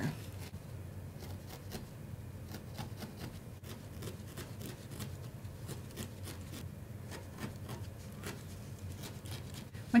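A coarse barbed felting needle stabbing again and again into core wool wrapped over a wire armature, faint soft pokes a few times a second in an uneven rhythm, anchoring the first wrapped layer of fibre.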